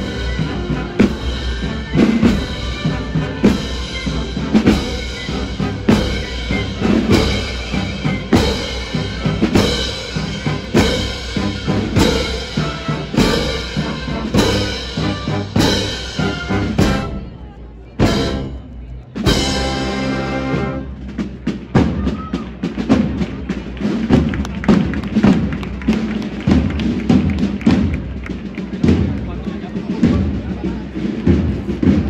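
A procession band playing a slow march, with a steady heavy drumbeat about once a second under sustained band chords and murmuring crowd voices. A little past the middle the music drops back for a moment, then resumes with quicker, sharper drum strokes.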